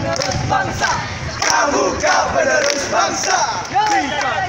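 A group of young men shouting a scout yel-yel, a rhythmic group cheer, loudly in chorus, with hand claps.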